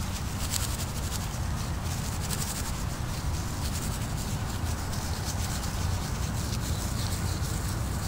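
Dry broom sedge grass being rubbed, twisted and rolled between the hands to buff it into fine tinder fibres: a continuous scratchy rustle with fine crackling. A low rumble sits underneath.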